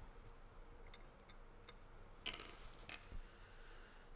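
Near silence: room tone, with a few faint clicks a little past halfway.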